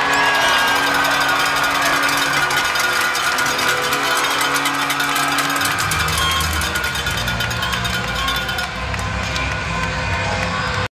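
Arena music played for a goal at an ice hockey rink, with quick clattering clicks throughout and a heavy bass coming in about six seconds in.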